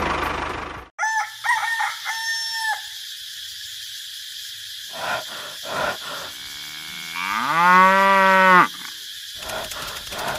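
Farmyard animal sound effects: a few short chicken calls about a second in, then one long cow moo near the end that rises in pitch and holds.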